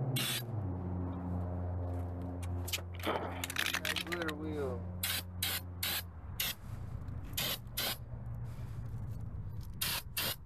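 Aerosol spray can of glitter paint hissing in a series of short bursts as it coats a steel wheel. A low steady hum sounds behind it and stops about six seconds in.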